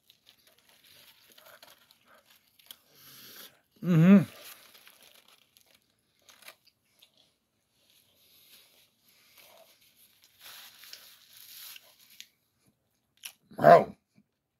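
A mouthful of fried chicken sandwich being chewed with faint crunches, alongside the crinkle of its aluminium foil wrapper and a paper bag. A short closed-mouth "mm-hmm" of approval comes about four seconds in, and another hum near the end.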